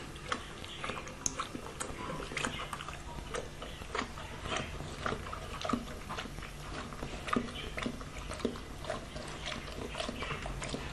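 Dog lapping water from a plastic bowl: irregular wet clicks and slurps, a few a second, over a low steady hum.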